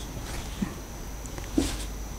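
Marker pen writing on a whiteboard: faint scratchy strokes, with two short louder squeaks, one about half a second in and one about a second and a half in.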